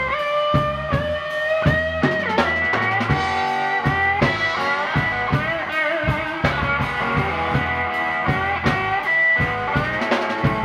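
Live blues band playing an instrumental passage: a lap steel guitar plays a lead line with sliding, bending notes over electric bass and a steady drum-kit beat.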